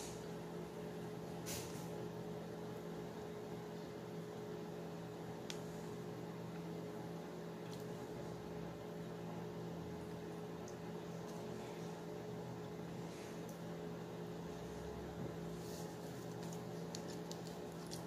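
Steady low hum of room equipment, with a few faint clicks scattered through.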